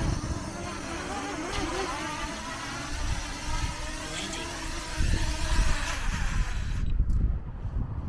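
DJI Mini 2 drone's propellers buzzing as it descends and touches down, with wind rumbling on the microphone. The buzz cuts off about seven seconds in as the motors stop on the ground.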